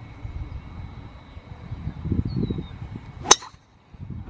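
A golf driver striking a teed ball: one sharp crack about three seconds in, the loudest sound here, after a low rumble.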